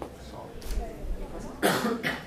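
A single short, loud cough from a person in the room, about one and a half seconds in, over a low murmur of voices.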